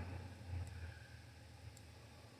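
Quiet room tone with a faint, steady low rumble and a tiny tick near the end; no distinct sound stands out.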